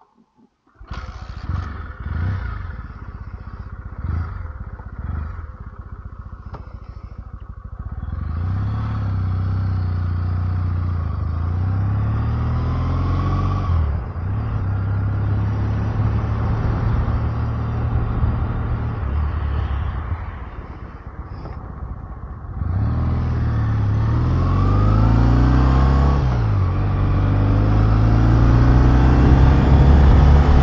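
Kawasaki W650's air-cooled parallel-twin engine starting about a second in and idling with a few throttle blips, then pulling away and accelerating through the gears, its note rising and then dropping at each shift. Wind rush on the microphone grows as speed builds.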